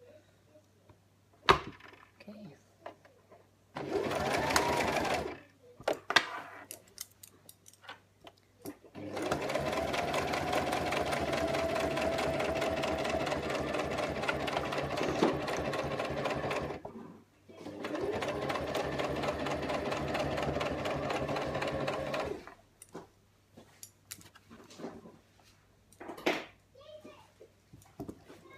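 Small domestic electric sewing machine stitching a straight seam through two layers of poly-cotton fabric in bursts. There is a short run about four seconds in, a long run of about eight seconds from around nine seconds, a brief stop, then another run of about five seconds. The motor whine rises as each run starts. Sharp clicks and fabric handling fill the pauses between runs.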